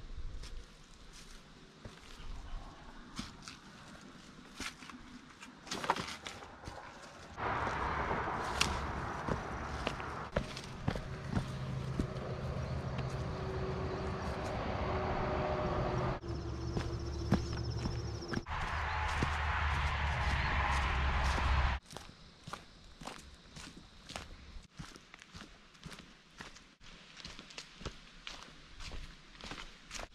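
Footsteps on a dirt hiking trail. In the middle stretch a loud, steady low rumble with a hum in it drowns them out, then stops abruptly.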